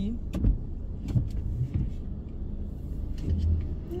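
Steady low rumble inside a car's cabin while it sits in traffic, with a few light taps and clicks in the first two seconds.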